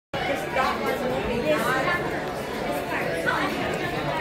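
Indistinct chatter of several people talking at once in a large indoor public space.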